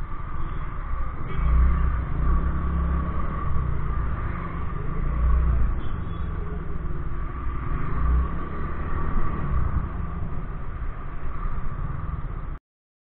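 Motorcycle engine running at low speed in traffic, with wind rumbling on the camera microphone in heavy low gusts a few times.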